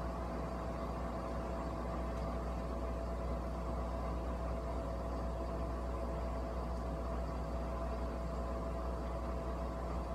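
Steady machine hum: one held mid-pitched tone over an even low rumble.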